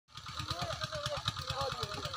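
People's voices calling and talking at a distance over a steady, rapid low chugging like a small engine running.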